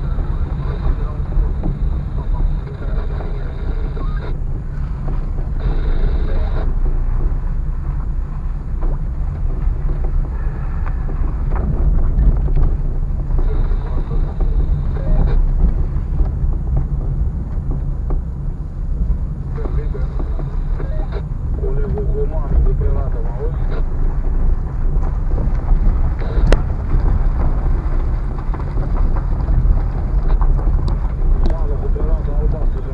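Car driving over a rough, unpaved, potholed road, heard from inside the cabin: a loud, steady low rumble from the tyres and body, with uneven jolts and occasional sharp knocks.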